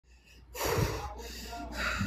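A person gasping and breathing hard: a loud breathy rush about half a second in, then two shorter breaths.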